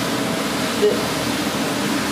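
Steady rushing noise of gas burners on high flame and pots of water at a rolling boil.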